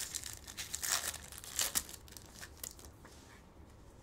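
Foil wrapper of a 2023 Bowman Chrome hobby trading-card pack being torn open and crinkled by hand. A quick run of sharp crackles is thickest in the first two seconds, then thins out as the cards come free.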